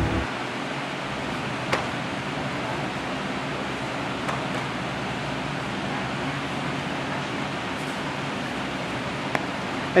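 Steady even hiss of room noise, broken by three brief sharp knocks, the loudest a little under two seconds in.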